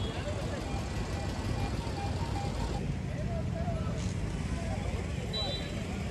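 Roadside street ambience: a steady low rumble of traffic with faint, indistinct voices in the background.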